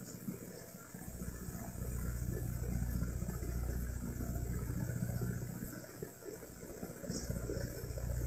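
Faint low rumble of a vehicle engine in street traffic, swelling for a few seconds, dipping and picking up again near the end.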